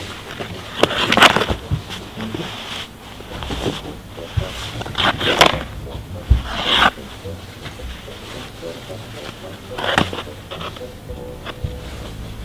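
Ice skate blades scraping and a hockey stick knocking on natural ice, in separate strokes every few seconds.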